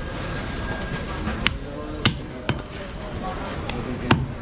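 Butcher's cleaver chopping goat meat on a wooden log chopping block: four sharp, separate chops, the first about a second and a half in, over background voices and shop noise.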